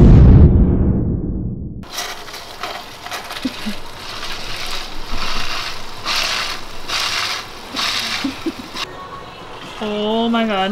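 A loud, deep sound effect opens, then a refrigerator door water dispenser runs into a plastic cup for several seconds and cuts off shortly before the end.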